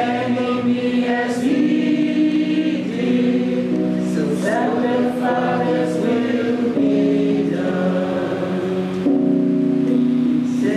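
A roomful of people singing a hymn together slowly, with long held notes that change pitch about once a second.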